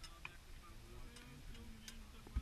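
Quiet outdoor lull: faint voices of people talking some way off, with a few light, sharp clicks, the clearest one near the end.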